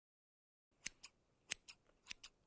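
Scissors snipping twice, each snip a quick double click, about two-thirds of a second apart.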